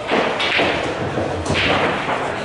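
Three short thumps with rustling, close to the microphone: something brushing or bumping near the recording device.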